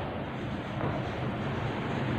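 Chalk scratching on a blackboard as a word is written, over a steady background hiss and faint hum.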